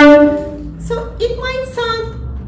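Cello played with the bow: a loud sustained note that fades away over the first half second, followed about a second in by a few softer, shorter high notes.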